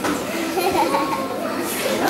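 Children's voices chattering and calling out in a large hall, with no music playing.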